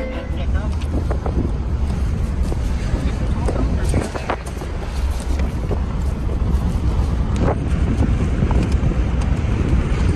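Low engine and road rumble inside a moving vehicle, with rustling and a few knocks as gear on the seat is handled.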